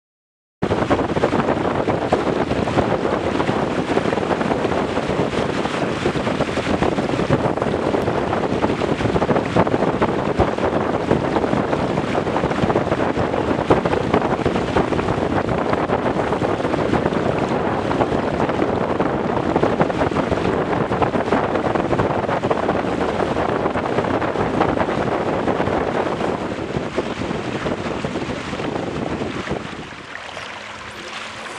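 Wind buffeting the microphone of a camera mounted on a Weta trimaran under sail, with water rushing past the hulls: a loud, steady rush of noise that starts about half a second in and eases off near the end.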